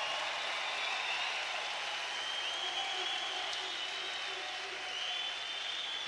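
Crowd applauding steadily.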